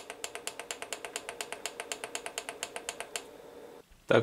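Rapid, even clicking of the Daniu MK-328 tester's push button, about nine clicks a second, stepping the PWM duty cycle; the clicking stops a little after three seconds in. A faint steady hum lies under it.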